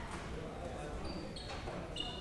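Indistinct chatter of several people in a large hearing room, with low thumps and knocks, and a few brief high clinks about a second in.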